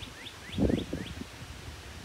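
A bird calling a fast series of short, rising chirps, about five a second, that stops about a second in. A dull low thump or rustle, the loudest sound, comes about half a second in.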